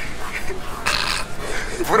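Low background talking, with a short hiss about a second in and a man's voice starting up near the end.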